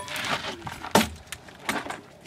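A chunk of wood swung as a club and struck against a target: a few sharp knocks, the loudest about a second in.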